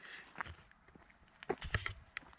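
A runner's footfalls on a road: a few soft, uneven steps, a couple about half a second in and a small cluster near the end, with a faint hiss in between.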